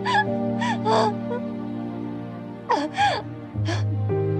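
A woman crying in about six short, gasping sobs, over slow background music with held low notes and chords.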